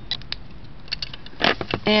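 Light clicks and ticks of a clear hard-plastic iPod touch stand case being handled and turned in the fingers, with one louder knock about one and a half seconds in.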